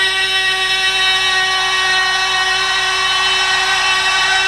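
A single long note from a distorted electric guitar, sustained at a steady pitch with no vibrato.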